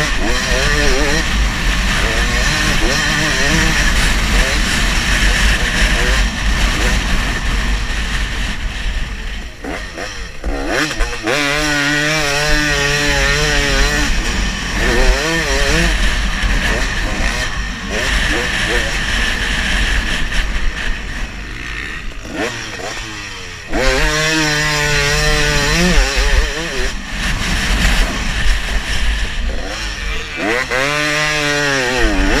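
Motocross dirt bike engine under hard riding, its pitch repeatedly climbing as it revs up through the gears and dropping back off the throttle, with a constant low rumble of wind buffeting the bike-mounted microphone.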